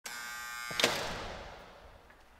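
Logo-reveal sound effect: a steady electric buzz that cuts off in a sharp hit less than a second in, followed by a long fading reverberant tail.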